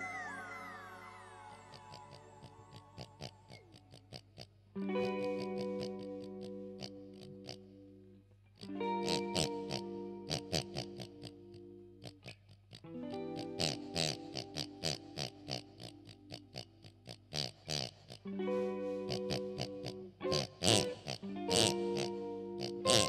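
Live band music: a few falling pitch sweeps at the start, then held keyboard chords in phrases a few seconds long, broken by short gaps, over a fast run of clicks. Pig-like oinking sounds are blown or squeezed into a microphone.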